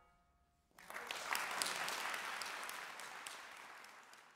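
Audience applause starting about a second in, after a brief silence, and slowly dying away.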